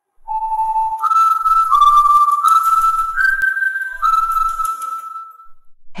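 A short whistled tune of about six held notes: it starts low, jumps up, steps around and ends on a long held note a little over five seconds in.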